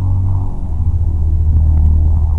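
Steady low rumble inside a Volkswagen car's cabin while the car sits in neutral: engine and road noise.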